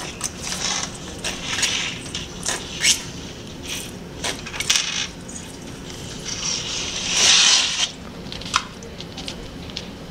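Toy cars clicking and scraping against one another as a hand picks them up and shuffles them, a string of short clicks with a longer scrape about seven seconds in.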